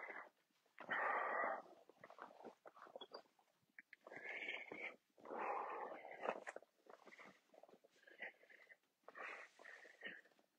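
A man breathing hard after a set of leg lifts, a few long, noisy exhales at irregular gaps of one to three seconds.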